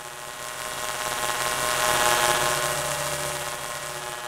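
A sustained, buzzy electronic drone of several held pitches that swells up to a peak about two seconds in and then begins to fade: an outro sound effect under the closing title card.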